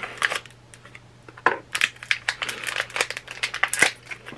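A small cardboard mystery pin box being opened by hand and its packaging crinkled: a quieter start, then from about a second and a half in, a dense run of sharp crackles and rustles.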